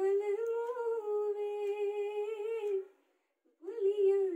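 A woman humming a melody unaccompanied, holding long notes that waver slightly in pitch; she stops about three seconds in for a short breath and starts again.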